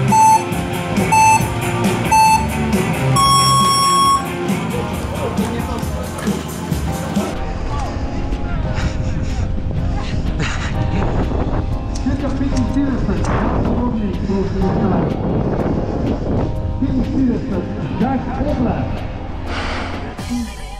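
Electronic race start timer counting down: three short beeps about a second apart, then one longer, higher beep as the go signal. After about seven seconds the sound turns to background music.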